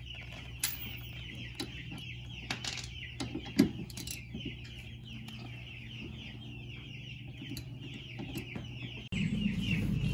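Baby chicks peeping continuously in quick, high, falling chirps over a steady low hum. A few sharp metal clicks and knocks come from a wrench and ratchet on a suspension bolt, the loudest about three and a half seconds in. Near the end the background turns suddenly louder.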